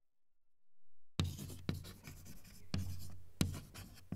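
Chalk scratching on a blackboard in a run of short, quick writing strokes, as a line of handwriting is written out. The strokes start about a second in.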